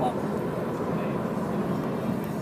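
Steady road and tyre rumble inside a moving car's cabin, on a road surface the passenger calls badly built.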